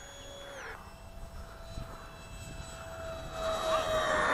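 Electric ducted fan of a radio-controlled plane, a 70 mm EDF on a 4S battery, whining as it flies a fast pass. Its high whine drops sharply in pitch about two thirds of a second in as it goes by, then a lower whine sinks slowly and grows louder toward the end.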